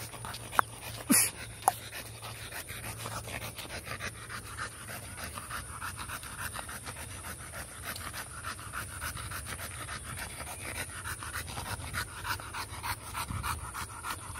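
An American Bully dog panting fast and steadily with its tongue out while walking, with a brief sharp sound about a second in.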